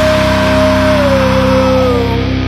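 Heavy rock music with distorted electric guitar and sustained chords; a held high note drops in pitch over the second half.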